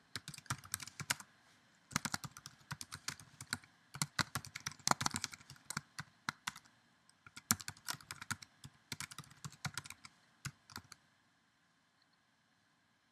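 Typing on a computer keyboard: quick runs of key clicks broken by short pauses, thinning to a few isolated keystrokes near the end.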